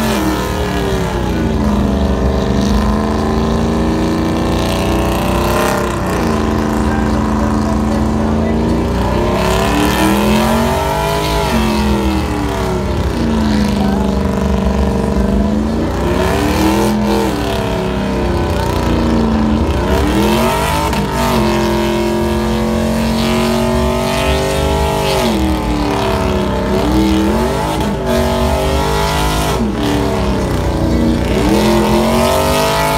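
Pickup truck engine revving hard in a burnout, rear tyres spinning on a water-wetted pad. The revs are held high and drop and climb back again every few seconds.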